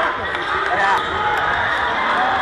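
Live basketball play in a crowded gym: the ball bouncing on the hardwood court under a steady mass of crowd voices and shouts echoing through the hall.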